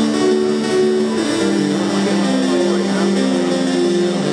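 Kitara stringless digital guitar playing a synth sound as chords are picked through. Clean, sustained notes overlap and move in steps from pitch to pitch.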